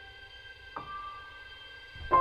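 Quiet background music: soft sustained tones, with a single gentle note struck just under a second in and left ringing.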